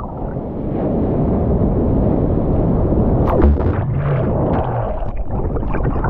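Breaking wave's whitewater churning around a GoPro held at water level: a loud, deep rush that builds over the first second and holds, with a sharp splash hit about three seconds in.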